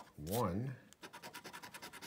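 A scratch-off lottery ticket being scratched in quick, even strokes, which take up the second half, after a short spoken word near the start.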